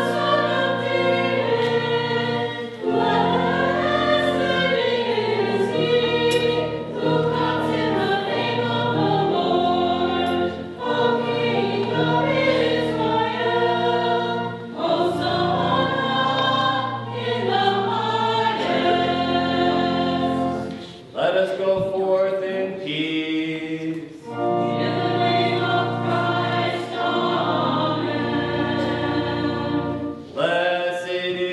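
A choir singing a hymn with sustained low accompanying notes, pausing briefly about two-thirds of the way through.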